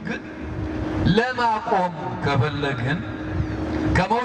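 A man preaching a sermon; the speech starts about a second in, after a short pause, with a steady low hum beneath it.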